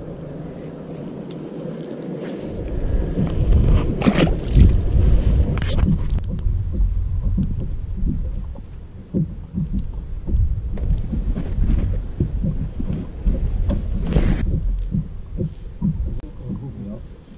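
Wind buffeting the microphone on an open boat deck: a gusting low rumble that picks up about two and a half seconds in, with a few sharp knocks.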